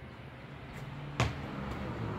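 A basketball bounces once, sharply, on a concrete driveway about a second in, over a faint steady low hum.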